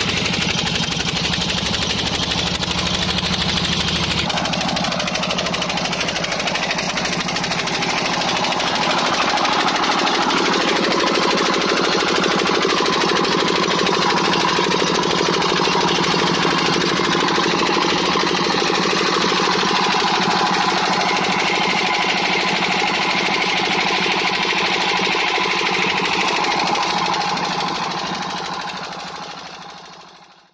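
Old stationary diesel engine running steadily with a fast knocking beat, driving a belt-driven irrigation water pump. The sound fades out near the end.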